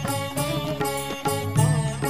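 Telugu devotional song to Hanuman in a Carnatic style: a pitched melody line over percussion strokes.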